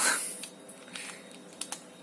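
A short breath, then a few soft clicks of a computer mouse selecting a BIOS setting, over a faint steady hum.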